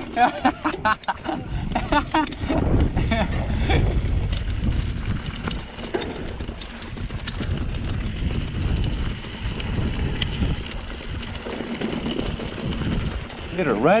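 Mountain bike rolling along dry dirt singletrack: tyres running over the dirt and the bike rattling, with wind rumbling on the camera microphone. A laugh near the start and a few words at the end.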